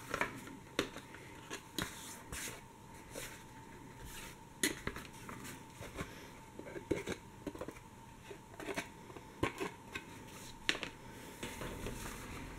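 A pointed hand tool poking the die-cut bits out of the punched holes in chipboard covers: scattered irregular clicks and short scrapes of metal on cardboard, with the boards rustling as they are handled.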